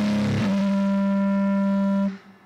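Guitar and drum kit playing together, ending about half a second in. Then a single guitar note rings on steadily and is cut off sharply at the very end.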